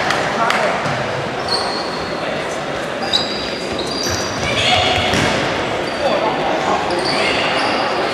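Indoor football game in a sports hall: trainers squeak sharply on the hall floor again and again, the ball is kicked with a few sharp knocks, and indistinct voices and calls echo through the large hall.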